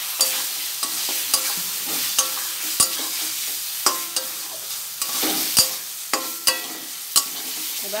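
Potatoes frying in spice paste in a metal pan, sizzling steadily while a spatula stirs them, scraping and knocking against the pan about once a second with brief ringing after some strokes.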